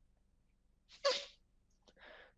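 A single short, sharp breathy sound from the presenter about a second into a pause, otherwise near silence.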